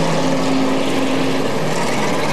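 Engines of a pack of street stock race cars running together around an asphalt oval, a steady drone.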